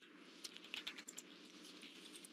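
Faint clicks of typing on a computer keyboard, with a quick run of keystrokes in the first second and scattered ones after.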